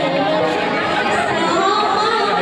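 Crowd of many people talking at once, a continuous babble of overlapping voices.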